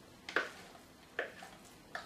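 Thick apple filling being tipped from a plastic food processor bowl into a glass pie dish, giving two short soft sounds, about a third of a second and a second and a quarter in.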